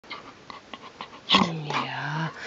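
A dog vocalizing about a second in: a sudden loud start that turns into a drawn-out low moan, falling slightly in pitch, after a few faint clicks.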